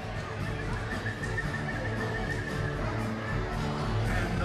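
A string band plays live music in a large hall, with a steady bass line. A high held note sounds from about a second in until nearly three seconds.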